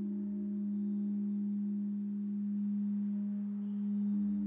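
Singing bowl held in a steady low drone: one sustained tone with faint overtones that neither fades nor changes pitch.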